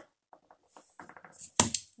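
Soft clicks and taps close to the microphone: a few faint ticks, a quick run of small clicks about a second in, then one sharper knock near the end.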